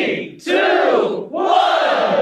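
A crowd of many voices yelling together in three loud swells, each rising and then falling in pitch.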